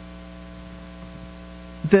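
Steady electrical mains hum in the microphone sound system: an even, unchanging drone made of several fixed low tones. A voice starts speaking near the end.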